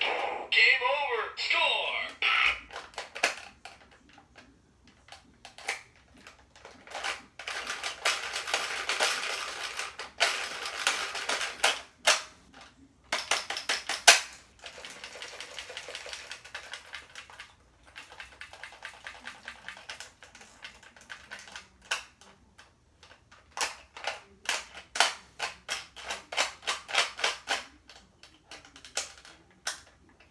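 Plastic clicking and rattling from a Bop It Extreme toy being worked by hand, its controls and spinner clicked over and over, with quick runs of clicks near the end.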